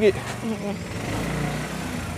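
A steady, low engine drone running at an even idle.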